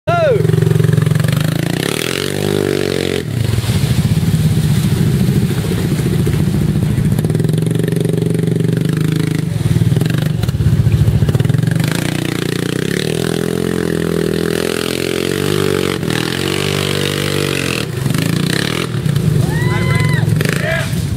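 Engine of a side-by-side UTV heard from on board, running continuously and revving up and down as it drives along a rough dirt trail.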